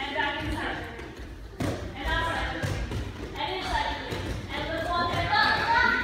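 High-pitched voices calling out across a large hall, with occasional thuds of hands and feet striking the floor mats as children crawl.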